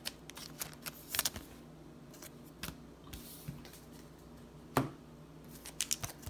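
Scattered crinkles and clicks of a clear plastic wrapper and a foil Pokémon booster pack being handled, louder around one second in and again near five seconds, over a faint steady hum.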